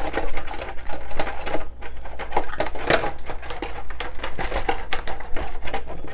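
Plastic body shell of a Traxxas Rustler 4x4 VXL RC truck clicking and rattling rapidly against the chassis as it is tugged and worked by hand. The body is stuck and won't come off easily.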